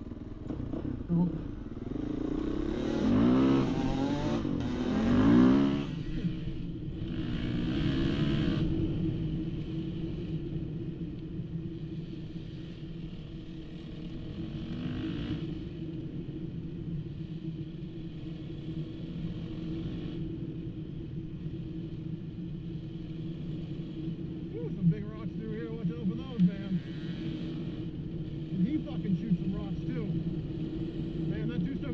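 Motorcycle engine running as the bike rides a dirt trail, revving up in pitch a couple of seconds in and again shortly after, then running steadily at low speed. A few sharp clatters come near the end.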